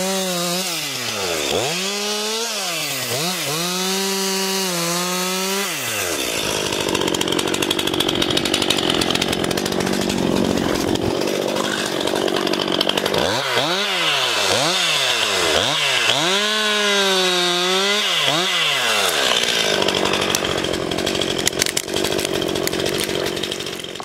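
A roughly 50 cc chainsaw felling a tree: the engine is revved up and let off again and again, then runs steadily under load as the chain cuts through the trunk. The rev-and-release pattern returns midway, followed by more cutting near the end.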